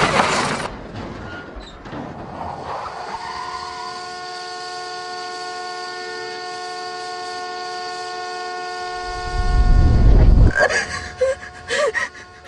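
The fading tail of a car crash impact, then a car horn sounding in one long unbroken blare for several seconds, as a horn stuck on after a collision. A loud low rumble comes near the end.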